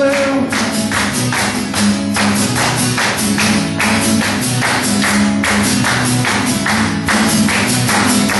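Acoustic guitar strummed in a steady, brisk rhythm, chords ringing under each stroke, as an instrumental passage between sung lines.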